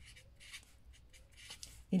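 A pen writing on paper, a run of short, faint, scratchy strokes as figures are written out.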